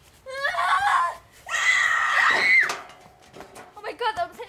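A girl's voice shouting, then one long, high scream of about a second that cuts off sharply; another shout starts near the end.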